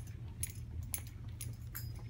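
Footsteps of people walking at a steady pace, about two steps a second, each step a short click with a light metallic jingle, over a steady low room hum.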